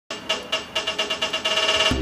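An electronic beeping tone that pulses faster and faster, from about four beats a second to a rapid flutter. Background music starts right at the end.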